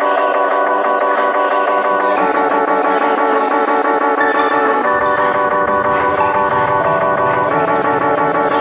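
Background music: a repeating plucked guitar figure, with a bass line joining about five seconds in.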